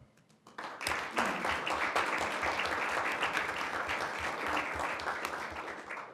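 A roomful of people applauding; the clapping starts about half a second in, holds steady, and dies away near the end.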